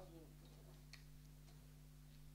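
Near silence: a steady low electrical hum with a few faint clicks, and a brief faint voice sound at the very start.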